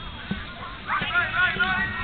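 Short, high voices calling out over outdoor background noise, starting about a second in and growing busier.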